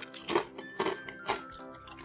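Potato chips being bitten and chewed, about four crisp crunches roughly half a second apart, over quiet background music.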